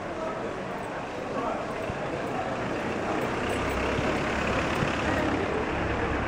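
Street sound: passers-by talking, with a motor vehicle's engine getting louder over the second half as it comes close.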